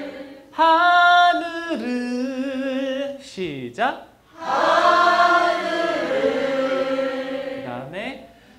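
A man singing a slow ballad melody unaccompanied into a handheld microphone: long held notes with vibrato in two phrases, broken by a quick sliding note and a short pause near the middle.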